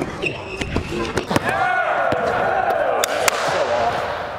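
A basketball being dribbled and bounced on a gym floor: a few irregular, sharp thuds with rubber-sole squeaks. In the middle a voice lets out a drawn-out, wavering shout for about two seconds.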